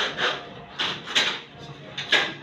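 Aluminium sliding-window frame scraping and rubbing against the sill and track as it is worked into the opening, in about five short scrapes.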